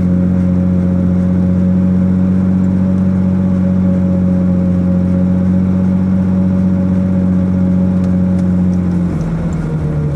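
Car engine running steadily, a loud low drone heard from inside the cabin. About nine seconds in, its pitch drops as the engine slows.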